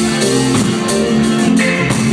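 A live rock band playing loud: electric guitars and bass over a drum kit, with cymbals keeping a steady groove.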